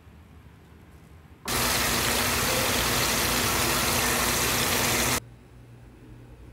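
A loud, steady rushing noise like static, with a faint low hum in it. It cuts in suddenly about a second and a half in and stops just as suddenly about five seconds in.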